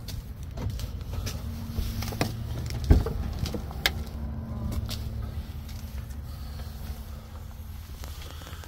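Ford F-150 driver's door being unlatched and swung open, with a sharp clunk about three seconds in and a few lighter clicks, over a steady low rumble. Rustling and knocks follow as someone climbs into the cab.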